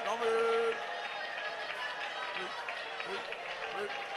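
A man's voice holding one long sung note that ends under a second in, then many voices murmuring and speaking at once, a congregation praying aloud together.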